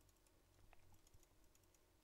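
Near silence, with a few faint clicks of typing on a computer keyboard.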